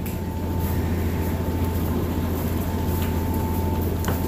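Steady low drone of a moving car ferry's engines and machinery, heard inside the enclosed passenger cabin, with a faint steady high tone running over it.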